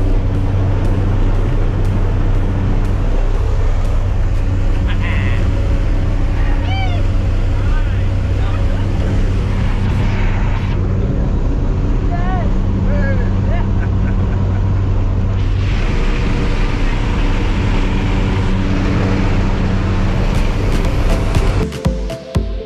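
Steady drone of a jump plane's engine and propeller heard from inside the cabin, with rushing air over it. A few short voice calls cut through the noise.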